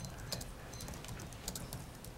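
Irregular light clicks and taps, a few a second, over a low steady hum.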